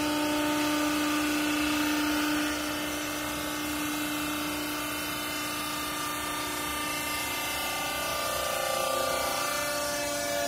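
Hydraulic baling press's motor and pump running with a steady pitched hum, dropping a little in loudness about two and a half seconds in and shifting slightly in pitch near the end.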